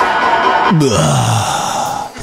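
Electronic bass music in a DJ mix, crossing from a 140 dubstep-style track into the next tune. The heavy bass hits give way to a sustained wash of sound, with a pitched tone gliding downward about a second in.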